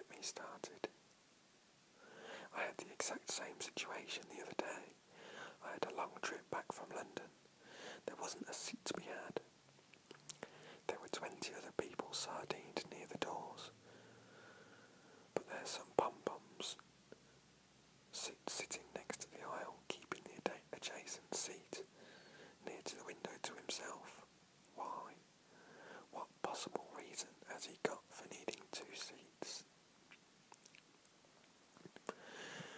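A man whispering, reading aloud in phrases with short pauses between them.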